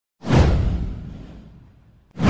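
An intro sound effect: a swoosh with a deep boom under it, starting suddenly and fading away over about a second and a half.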